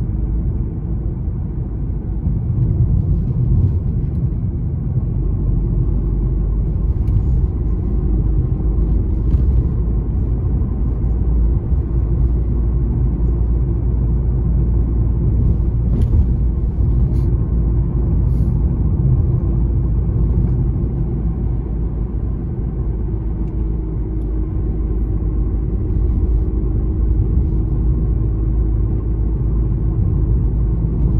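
Steady low rumble of a car driving along a road, heard from inside the cabin: engine and tyre noise at an even, unchanging pace.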